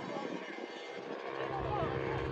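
Distant voices of soccer players and spectators calling out, with no clear words, over open-air ambience. A steady low engine-like hum comes in about halfway through.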